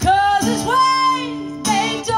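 A woman singing live, holding one long wordless note that steps up in pitch about half a second in, over acoustic guitar; a new phrase starts near the end.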